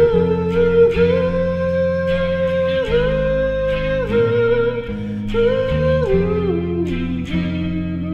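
Electric guitar and bass guitar, both tuned down a half step, playing a slow riff of ringing Aadd9 and F♯ chords over bass notes. A long-held melody line glides between notes above them and steps down near the end.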